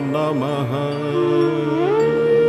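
Devotional Sanskrit chant music over a steady drone. A sung phrase bends and ends in the first second, then a melodic line glides upward into a held note near the end.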